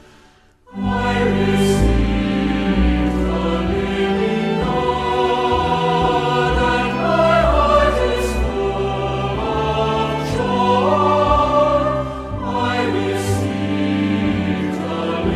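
After a brief pause, a choir starts singing about a second in, with voices holding and gliding between notes over a steady low accompaniment.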